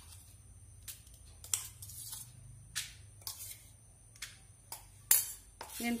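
Faint, scattered light clicks and taps as spice paste is spooned from a steel mixer jar onto steel plates of dry pulses and worked into the grains by hand; the sharpest click comes about five seconds in.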